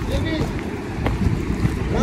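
Wind buffeting the microphone with an uneven low rumble, and faint voices of people further off.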